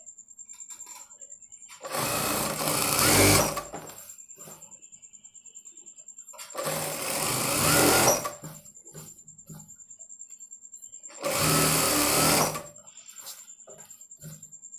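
Sewing machine stitching in three short runs, each about one and a half to two seconds long, the first two speeding up as they go. In the pauses between runs a faint steady high whine is heard.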